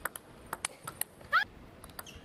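Table tennis ball clicking off rackets and table in a fast rally, several quick hits. About two-thirds of the way in comes one short rising squeak, louder than the hits.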